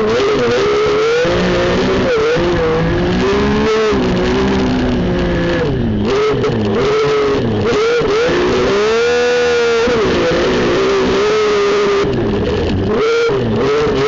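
Race car engine heard from inside the cockpit, its pitch rising and falling as the throttle is worked through corners, with one sweep up to high revs and back down about nine seconds in.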